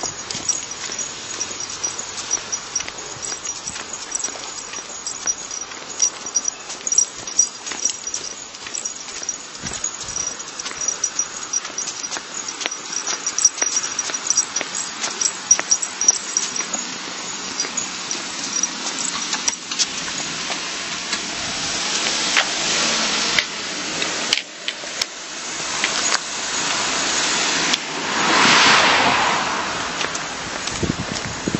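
Footsteps on a paved roadside sidewalk, with cars passing on the road alongside: two go by in the second half, and the louder one rises and fades near the end.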